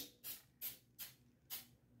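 Aerosol can of temporary fabric spray adhesive given four short hissing puffs, spaced roughly a third to half a second apart.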